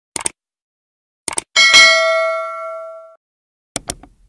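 Mouse-click sound effects, each a quick cluster of clicks, come about a fifth of a second in and again just after one second. Then a bell ding rings out about one and a half seconds in and fades for over a second before cutting off. Another click cluster follows near the end.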